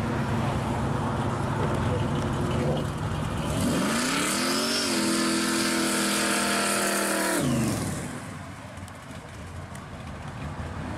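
Supercharged V8 of a 1971 Chevy Vega panel pro street car pulling away. It runs steadily at first, is revved hard about three and a half seconds in, its pitch climbing and then held high for a couple of seconds, then lets off and fades as the car drives off.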